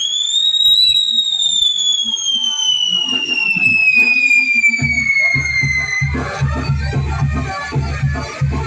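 A whistling firework: one long, shrill whistle that rises for a moment and then slowly falls for about five seconds, with scattered crackles and pops. Music with a heavy, steady beat comes in about five seconds in.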